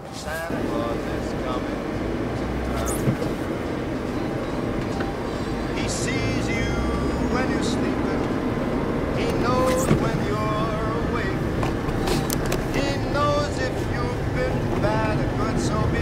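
Car on summer tyres driving along a snow-covered track, heard from inside the cabin: a steady low rumble of engine and tyres on snow. A song with singing plays over it.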